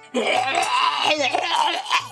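A woman laughing for nearly two seconds, with quiet background music underneath.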